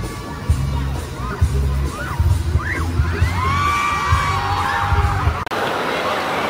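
Live pop concert: loud music with a heavy, rhythmic bass beat and high-pitched screaming from fans in the crowd. About five and a half seconds in, it cuts abruptly to an even hubbub of noise.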